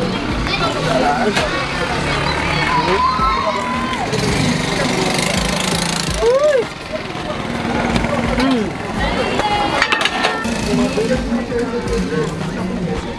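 People talking at conversational pitch over a steady low hum.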